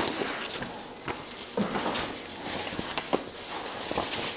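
Sheets of paper rustling and shuffling as they are leafed through by hand, with a sharp click about three seconds in.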